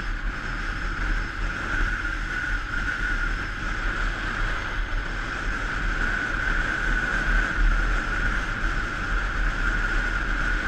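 Steady wind rush over the microphone of a camera mounted on a moving motorbike, with the bike's engine and tyres running at an even cruising speed.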